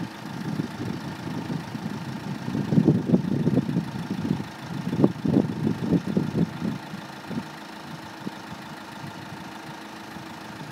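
An engine idling with a steady hum, under louder, uneven low rumbling that dies away about seven seconds in.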